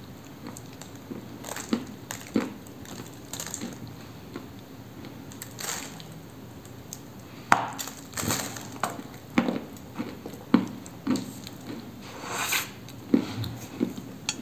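Baked Cambrian clay cookie being bitten and chewed close to the mouth. A few small crackles come first, then a sharp crunching bite about halfway through, followed by a run of dry crunches roughly every half second to second.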